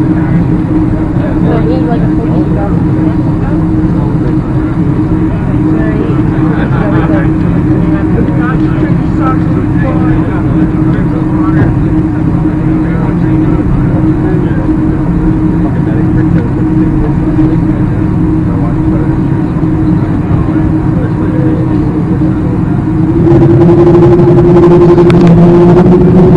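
Jet airliner engines heard inside the cabin, running steadily at taxi power with a constant hum. About 23 seconds in they spool up for takeoff, growing louder with a rising tone.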